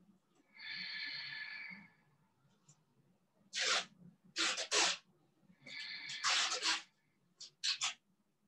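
A person's breath sounds: a drawn-out breath with a faint whistle to it about half a second in, then a series of short, sharp bursts of breath in clusters through the second half.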